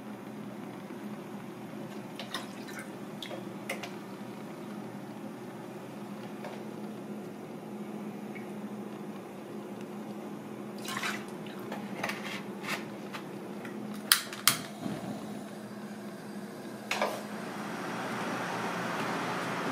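Liquid seasoning dripping and pouring into a small saucepan of broth, with scattered clicks and clinks of a spoon and bottles against the pan, over a steady low hum. The loudest are two sharp clicks about two-thirds of the way in.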